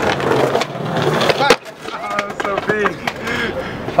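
Skateboard wheels rolling on concrete, then a single sharp clack of the board about a second and a half in.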